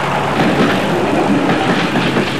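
A train running along the track, a steady continuous noise.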